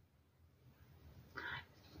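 Near silence: quiet room tone in a pause between sentences, with one faint, brief sound about one and a half seconds in.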